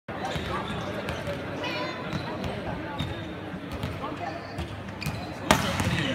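Volleyball being hit: a few lighter knocks, then a hard spike about five and a half seconds in, the loudest sound. Players' voices call out around it.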